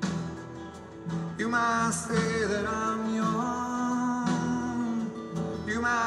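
Acoustic guitar played live, with a man singing over it; the guitar is quieter at first and the voice comes in about a second and a half in.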